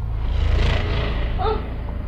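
Rustling and rushing handling noise as the camera is swept over the bedding while the holder climbs out of bed, loudest in the first second, with a short rising vocal squeak about a second and a half in.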